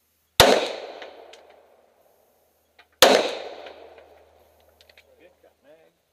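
Two semi-automatic pistol shots about two and a half seconds apart, each a sharp crack followed by a long echo that dies away over a second or more.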